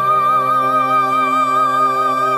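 Meditative music: one long, high held note wavering evenly in pitch over a steady lower drone.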